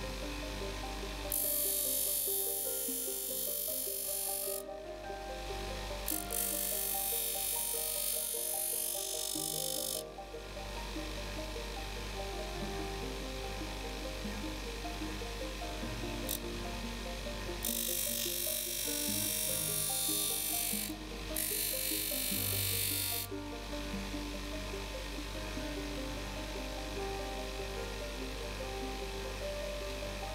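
Background music, with four bursts of several seconds each of a hissing, buzzing small motorised machine. The bursts come in the first third and again around the middle, as a strip of white cowhide is worked against the machine's wheel.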